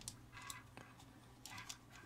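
Faint, scattered clicks of a Phillips screwdriver turning a small screw in the plastic housing of a JBL Clip+ speaker.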